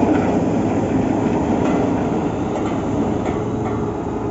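Truck-mounted borewell drilling rig running: a loud, steady diesel-engine and machinery noise without a break.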